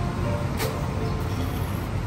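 Steady low rumble of street traffic, with faint background music and a single sharp click a little over half a second in.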